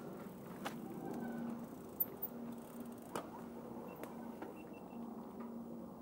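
Mountain bike rolling down a dirt forest singletrack: a low steady hum of tyres and drivetrain, with a few sharp knocks from the bike over bumps.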